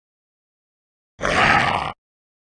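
A single short, loud growl-like roar, lasting under a second and starting just over a second in.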